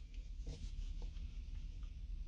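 Faint low rumble of a car cabin's background noise, with a few small faint ticks.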